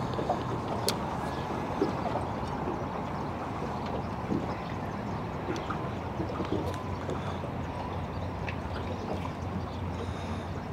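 Steady background of water and light breeze around a small aluminium fishing boat, with a low steady hum underneath and a few light ticks; a single sharp click about a second in.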